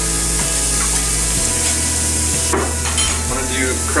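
Butter, shallots, mushrooms and garlic frying in a skillet, a steady hiss of sizzling.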